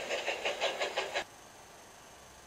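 Toy train engine running along the model railway track: a rapid rhythmic clatter of several beats a second that stops abruptly a little over a second in.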